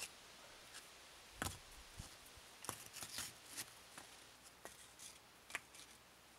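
Sandstone rocks being set down and shifted by hand on a fire-pit ring: a few faint, scattered knocks and scrapes of stone on stone, the loudest about one and a half seconds in.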